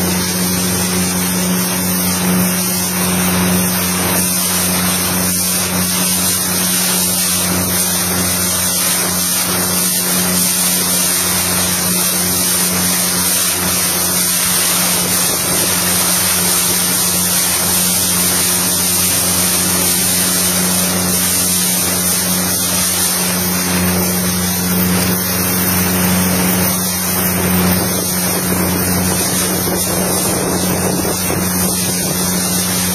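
A motorboat's engine running at a steady, unchanging pitch, mixed with constant wind and water rush on the microphone.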